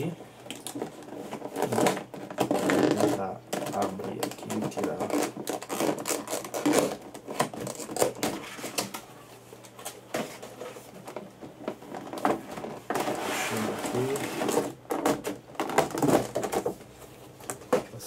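Stiff clear plastic packaging being pulled and handled inside a cardboard box: irregular crinkling, rustling and clicking of the plastic inserts around the boxed statues.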